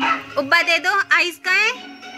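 Short, high dog yips, about five in quick succession, over nursery-rhyme music.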